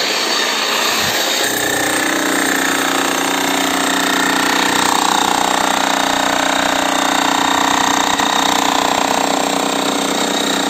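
DCK 11 kg demolition breaker hammer running, a rapid, even hammering that picks up about a second and a half in and is loudest through the middle.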